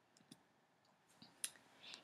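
Near silence with a few faint short clicks, the clearest about one and a half seconds in.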